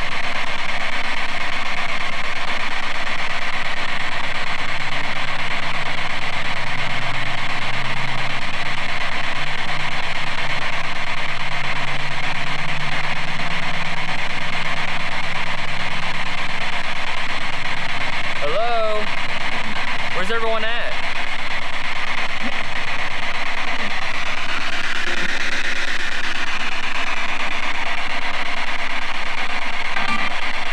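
A spirit box sweeping through radio stations, played through a small handheld speaker: a steady static hiss broken by brief garbled snatches of broadcast voices, twice near the two-thirds mark. The voices are stray radio, as the investigator himself believes.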